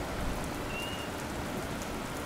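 Steady hiss of rain, a stock thunderstorm ambience, with a short faint high tone a little before the middle.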